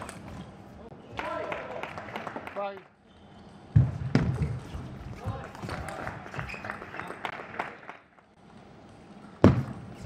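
Table tennis ball clicking off rackets and bouncing on the table during doubles rallies, with voices between the strokes. There are two loud hits, about four seconds in and near the end.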